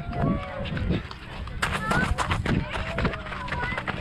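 Quick footfalls of a person running downhill, starting about a second and a half in, with wind rumbling on the handheld camera's microphone and short bits of voice.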